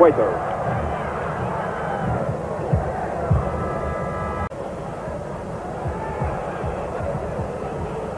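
Steady stadium crowd noise during football play on an old television broadcast. A short pitched note sounds from the crowd about three and a half seconds in, and the sound drops out for an instant about halfway through.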